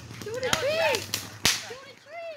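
Ground fountain firework going off, with three sharp cracks and several short whistling tones that rise and fall in pitch.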